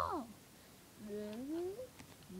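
The tail of a spoken word, then, about a second in, a single wordless call that rises steadily in pitch for about a second.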